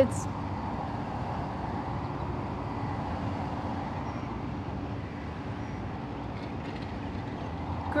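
Steady roadside traffic noise: a low, even drone of vehicle engines and road noise with no distinct events.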